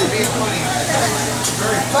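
Voices talking over the sizzle of noodles frying on a hibachi griddle, with a laugh near the end.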